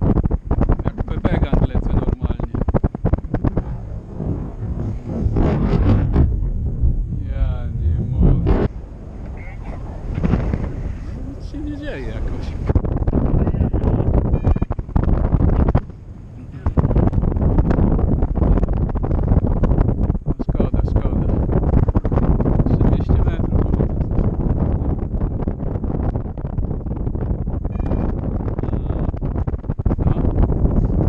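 Airflow in paraglider flight buffeting the camera microphone: a loud, gusty wind rumble that drops out briefly about halfway through.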